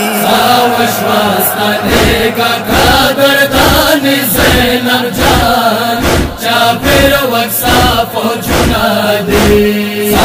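A Pashto noha lament chanted over a steady sinazani chest-beating rhythm of about one and a half beats a second.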